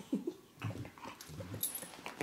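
A dog making about three short, low vocal noises while rolling and squirming on its back in play, with a brief high rustle near the end.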